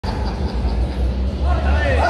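A loud, steady low rumble under the voices of people around the table. The rumble drops away near the end.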